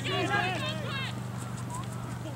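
Players shouting to each other on the field during an Australian rules football match, loudest in the first second, over a steady low hum.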